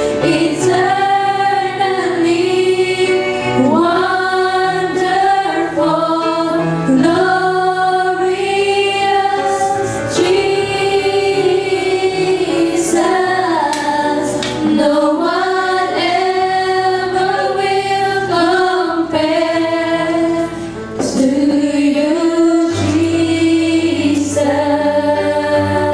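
A group of women singing a worship song together in held, sustained notes, over an accompaniment of long held bass notes.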